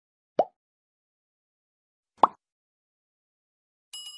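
Two short pop sound effects, each rising quickly in pitch, about two seconds apart; the second is louder. A bell ding starts ringing at the very end.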